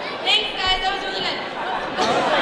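Voices chattering in a large hall, with a few brief high-pitched calls about a third of a second in and again just before the middle.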